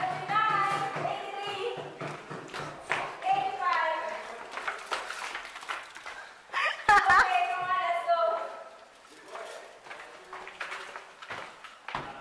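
High-pitched wordless voices, shrieks and shouts, coming in several bursts, with a few sharp knocks about seven seconds in and a low steady hum under the first two seconds.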